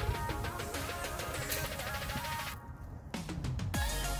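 Background music with a melody over a steady beat. About two and a half seconds in, the top end drops out briefly, then a low sweep falls in pitch.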